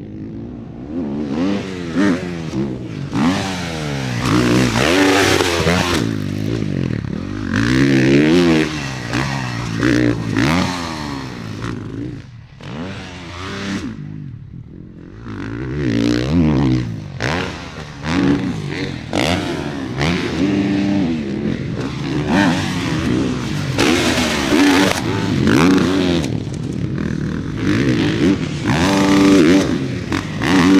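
Four-stroke motocross bikes revving hard on a dirt track, the engine pitch climbing and dropping again and again with throttle and gear changes as bikes pass close by, with a brief lull about halfway through.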